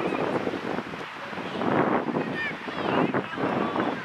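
Children's voices shouting across the pitch during a youth football game, short high calls coming one after another, with adult spectators' voices and wind buffeting the microphone underneath.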